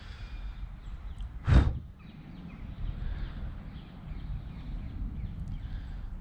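Outdoor ambience on a handheld camera microphone: a steady low wind rumble, broken about one and a half seconds in by one brief loud puff of wind or breath on the microphone.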